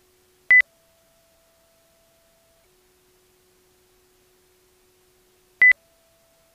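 Two short, loud electronic beeps about five seconds apart, over a faint steady tone that switches between a lower and a higher pitch.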